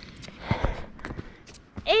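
Footsteps on a packed dirt trail: a handful of short, uneven steps while walking. Near the end a voice starts an exclamation.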